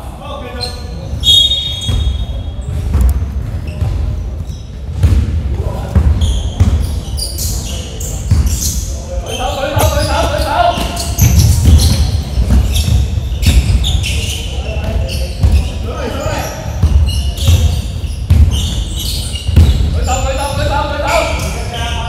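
A basketball being dribbled on a wooden gym floor, repeated bouncing thuds echoing in a large indoor sports hall, with players calling out to each other.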